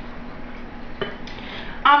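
Apple juice pouring from a measuring cup into a blender jar of fruit and yogurt: a soft, steady trickle, with a light knock about a second in.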